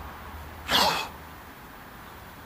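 A man's single short, explosive burst of breath through the mouth and nose, sneeze-like, about a second in and over in under half a second.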